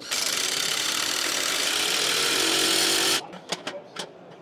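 Cordless drill running steadily for about three seconds, then stopping suddenly.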